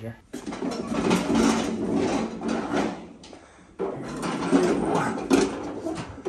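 Rolling and scraping noise of a child's wagon and other items being shifted on a concrete floor, in two stretches of a few seconds each.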